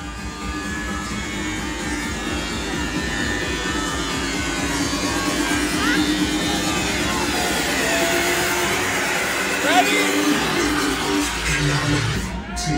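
Club music playing loudly with a crowd of voices talking and shouting over it; one voice calls out "yeah" near the end.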